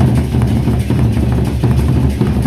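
Gendang beleq ensemble playing: large Sasak barrel drums beaten with sticks in a fast, dense rhythm over a heavy low drum boom, with cymbals. The playing comes back in at full loudness right at the start.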